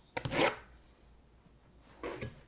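A palette knife scraping through wet acrylic paint on a canvas: one short scrape about half a second long near the start.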